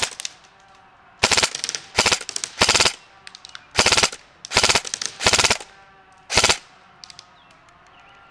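Elite Force HK416 A5 electric recoil airsoft rifle firing about seven short full-auto bursts, each a quick rattle lasting a fraction of a second, with brief pauses between them.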